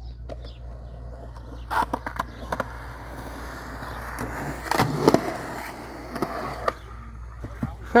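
Skateboard wheels rolling steadily over concrete, with several sharp clacks of the board. The loudest cluster of clacks comes about five seconds in, with single knocks before and after it.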